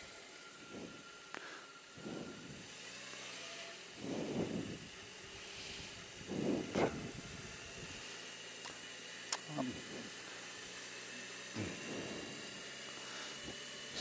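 Faint low-speed riding sound of a BMW R18 Transcontinental, its 1802 cc boxer twin running quietly. There are a few soft swells and light clicks.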